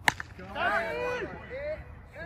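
A cricket bat striking a tape-wrapped tennis ball: one sharp crack just after the start. About half a second later several men shout at once for about a second.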